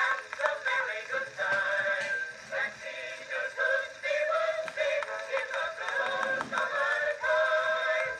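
A mixed chorus singing a medley of old popular songs, played back from a cylinder record on a cabinet cylinder phonograph. The sound is thin, with almost no bass.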